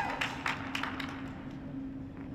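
Audience applause dying away: a few scattered claps in the first second or so, then only a steady low hum in the arena.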